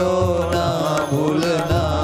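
Devotional chanting sung to a melody, with instrumental accompaniment over a steady low drone.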